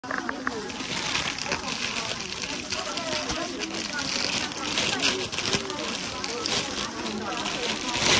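Voices talking in the background, mixed with rustling and crinkling of clear plastic wrapping on packed embroidered suits.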